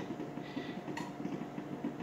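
A steady low mechanical hum with a fast, faint rattle in it, and a single soft click about halfway through.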